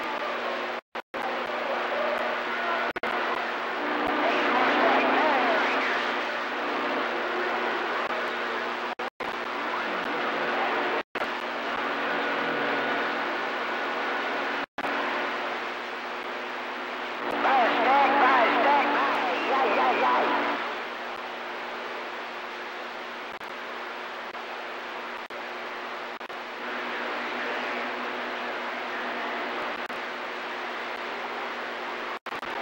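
CB radio receiver hissing with static, with weak, garbled voices of distant stations coming through twice, once a few seconds in and again just before the middle, and the audio cutting out completely for an instant several times.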